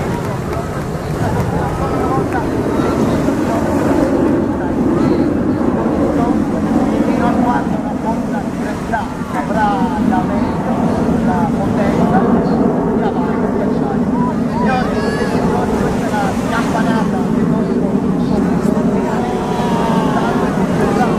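Steady jet noise from a Frecce Tricolori Aermacchi MB-339 PAN turbojet trainer performing overhead, swelling a couple of seconds in, with spectators chattering close by.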